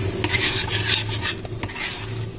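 A metal spoon scrapes and stirs a thick, crumbly cocoa-powder and condensed-milk mixture in a stainless steel saucepan, making a gritty rasping. The mix is too dry, with too much cocoa for the milk. The strokes are busiest in the first second and sparser after.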